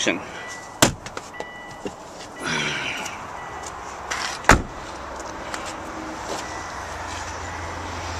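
A car's rear side door being shut: a sharp click a little under a second in, then one loud, deep slam about four and a half seconds in.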